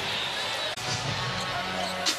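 Arena crowd noise under live basketball game action, a steady wash of sound with a short dip about three-quarters of a second in where the footage is cut. A low steady tone comes in near the end.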